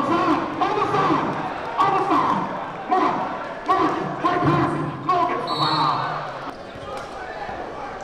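A basketball being dribbled on a hardwood gym floor, bouncing repeatedly. A brief high squeak comes a little past the middle.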